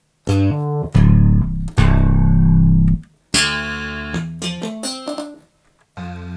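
Roland JD-800 digital synthesizer playing a deep, bass-heavy patch. A few short low notes are followed by two long, loud held notes. After a brief break comes a quicker run of shorter, brighter notes that dies away near the end.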